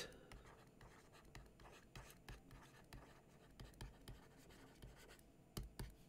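Faint scratching and tapping of a stylus writing on a tablet screen, in short strokes with small gaps.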